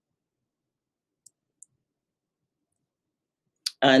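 Two faint, quick clicks a fraction of a second apart, from the computer as a presentation slide is advanced, in otherwise near silence; a woman's voice starts at the very end.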